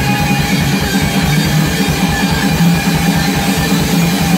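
Live rock band playing loud: electric guitars, bass and a drum kit over a fast, steady beat.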